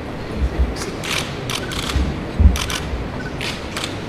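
Press cameras' shutters clicking irregularly, several in quick succession, over a steady hall noise, with a few low thumps; the loudest comes about halfway through.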